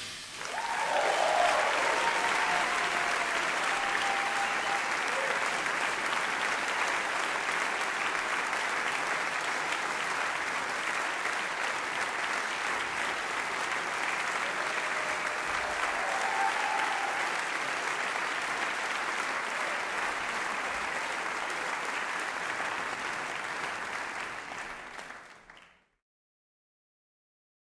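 Concert audience applauding steadily, with a couple of brief shouts about a second in and again midway; the applause fades out near the end.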